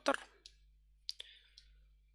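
A pause in speech: quiet room tone with a faint click about half a second in and a sharper short click about a second in.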